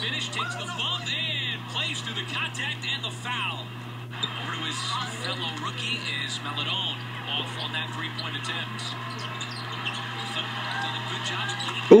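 Audio of an NBA game broadcast playing back: sneakers squeaking on the hardwood court in quick, scattered chirps, with commentators' voices underneath. A steady low hum runs beneath it all.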